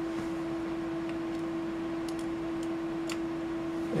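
Steady background hum of electrical or fan-cooled bench equipment: one unchanging tone over a soft hiss, with a few faint ticks.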